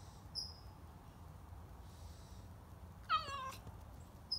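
Black-and-white stray cat meowing once, about three seconds in: a short meow falling in pitch. A brief high chirp sounds about half a second in.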